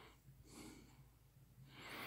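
Near silence: faint breaths close to the microphone, a few puffs about a second apart, over a faint low steady hum.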